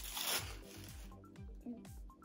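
Tissue paper crinkling and rustling as it is pulled off a small wrapped toy, loudest in the first half second, then a few light rustles and clicks, with soft background music underneath.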